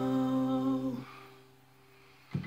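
A held sung note over the last strummed chord of an acoustic guitar. The voice stops about a second in, and the chord rings on more faintly.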